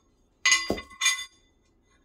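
Thin metal wheel spacer plates clinking, metal on metal, as they are handled and set on the wheel hub: two short ringing clinks about half a second apart.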